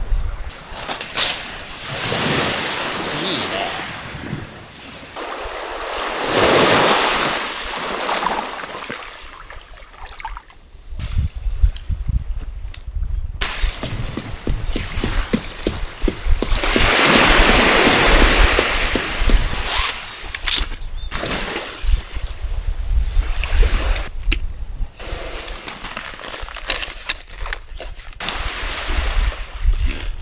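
Small waves washing onto a sandy beach, each swelling and fading over a couple of seconds, with wind rumbling on the microphone and scattered light knocks.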